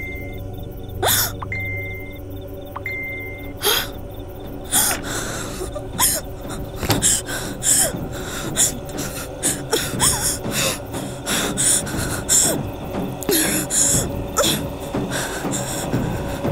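A frightened woman gasping and breathing hard, the gasps coming faster as it goes on, over tense background music. A few short beeps sound in the first three seconds.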